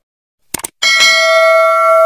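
Subscribe-button animation sound effect: a quick double mouse click about half a second in, then a notification bell chime that rings on steadily from just before the one-second mark.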